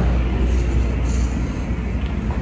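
Steady low rumble of background noise. About a second in comes a brief faint scratch of a marker on the whiteboard.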